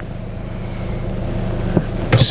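Mercedes-Benz B180 1.5-litre diesel engine idling with a steady low hum, heard from inside the cabin, growing slightly louder. A light click comes near the end.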